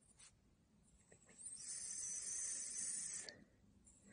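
A pencil scratching on paper for about two seconds as a child-sized cursive letter s is written, with a few faint taps of the pencil touching the paper before it.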